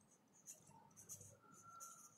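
Blue felt-tip marker writing letters on paper: a few faint, short scratching strokes.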